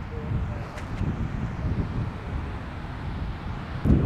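Wind buffeting the microphone, a gusty low rumble that rises and falls.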